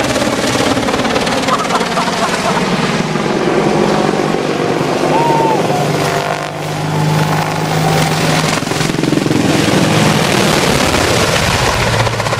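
AH-64 Apache attack helicopter flying low overhead: continuous rotor and turbine noise with a low droning tone that shifts in pitch as it passes.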